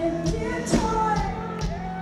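A live rock band playing a power ballad, with drums, guitars and a sung lead vocal, recorded from within the crowd. A drum hit lands about two-thirds of a second in.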